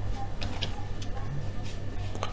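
Computer keyboard keys being typed, a few scattered separate clicks over a steady low electrical hum.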